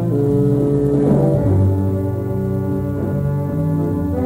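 Jazz big band of trumpets, trombones, tuba, saxophones and rhythm section playing sustained low chords, with the harmony shifting about a second and a half in.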